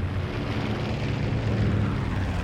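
Twin radial engines of a B-25 Mitchell bomber droning steadily in flight.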